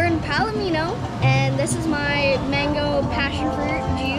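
A girl's voice talking over background music.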